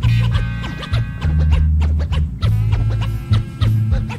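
Instrumental intro of a 1990s New York hip-hop track: a sampled beat with deep bass notes and drum hits, with DJ turntable scratching over it.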